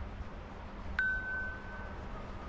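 A single clear chime rings out about halfway through, holding one high note as it fades over about a second. A fainter, lower tone follows near the end, over a low rumble.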